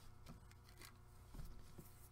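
Near silence: a few faint rustles and light ticks of a glued paper card and die-cut being handled on a tabletop, over a low steady hum.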